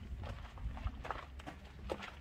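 Footsteps on hard ground: irregular taps and scuffs over a low rumble.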